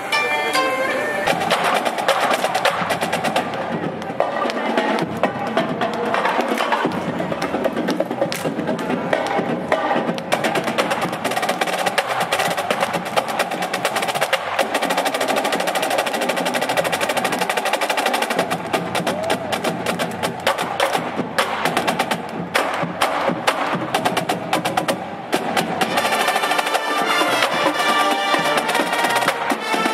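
A koto ensemble's plucked strings for about the first second, then a marching band's drum line playing a fast snare-drum cadence with rolls and sharp stick strokes, with the band's pitched instruments underneath.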